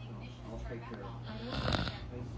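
Faint speech over a steady low hum, with a short, loud rasping noise a second and a half in.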